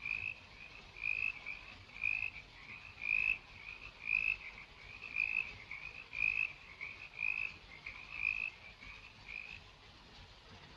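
Night-time animal calls: a short call repeated about once a second, with softer calls between, stopping shortly before the end.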